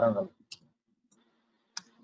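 A few sparse computer-keyboard clicks as a web address is typed into a browser, the sharpest near the end, over a faint low hum.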